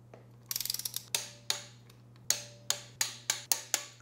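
A torque wrench's ratchet head clicking as connecting-rod cap bolts are drawn up to torque: a quick run of clicks about half a second in, then single sharp clicks that come closer together toward the end.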